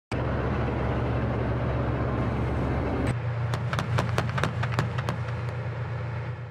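Engine of a BMPT Terminator tracked armored vehicle running steadily with a deep hum. About three seconds in the sound changes, and a series of irregular sharp clanks, several a second, rides over the engine.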